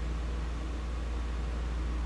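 Steady low hum with an even hiss over it, the room's background noise in a pause between speech.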